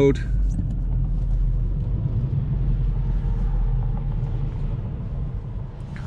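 Cabin drone of a VW Golf GTI Performance's 2.0-litre turbocharged four-cylinder engine with tyre and road rumble, heard from inside the moving car: a steady low sound that eases slightly in the second half.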